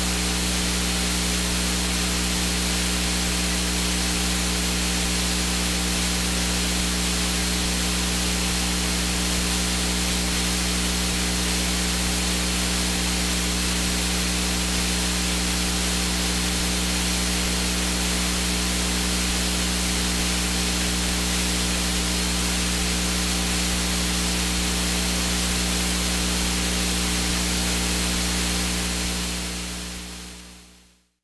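Steady electrical hiss with a low steady hum from the recording's sound-system feed, unchanging throughout and fading out near the end.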